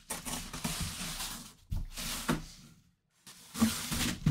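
Packing material and the box rustling as a football helmet is pulled out by hand, in a few separate rustles with a brief silence about three seconds in.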